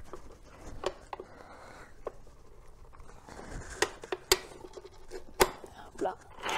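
Metallic clicks and clunks from a 1.6 t tirefort hand winch as its levers are pushed and the release handle is pulled hard to open the jaws that grip the steel cable: about six sharp knocks spread out, the loudest in the second half.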